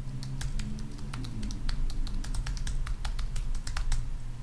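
Computer keyboard typing: a quick, irregular run of keystrokes as text is entered into form fields.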